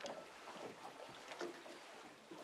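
Lake water lapping against moored boats and the shore: faint, irregular little splashes.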